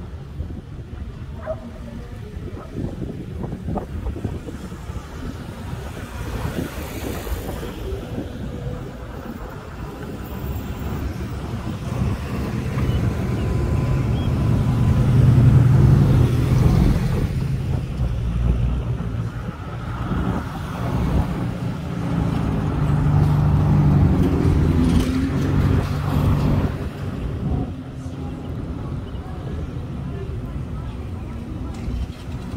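Road traffic on a town street: cars and a van passing close by, engine and tyre noise swelling to a peak about halfway through and again about three-quarters in.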